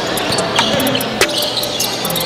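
Basketball being dribbled on an indoor court, with sharp short squeaks over a steady crowd hubbub.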